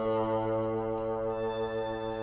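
Bassoon and string quartet playing a low sustained chord that enters at the very start and is held steady throughout.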